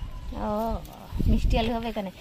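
A person's voice: a short drawn-out vocal sound about half a second in, then brief speech near the end.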